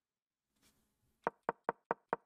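Chess.com piece-move sound effect clicking in quick succession as moves are played through on the board: four sharp wooden clicks about five a second, starting a little over a second in.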